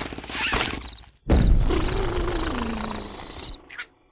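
Cartoon sound effects: a fast rattling shake, a brief rising squeal, then a loud sudden blast with a falling pitch that fades over about two seconds.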